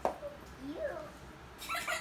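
Dog and kitten play-fighting, with short whining calls that glide up and down, then a harsher, noisy cry near the end.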